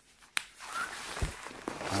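A single sharp click about a third of a second in, then duvet fabric rustling as it is handled.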